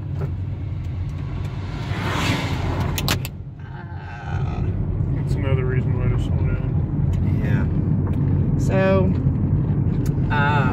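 Steady low road and engine rumble inside a car on a mountain highway, with an oncoming oversized semi truck passing close by: its rush of noise builds about two seconds in and cuts off about a second later. Faint voices follow in the second half.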